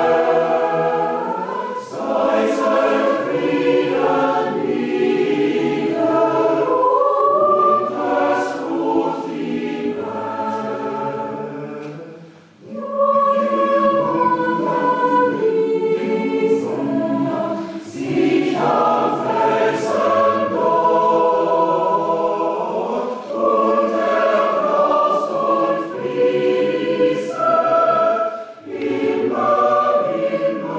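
A choir singing in several voice parts, phrase after phrase, with a short break between phrases about twelve seconds in.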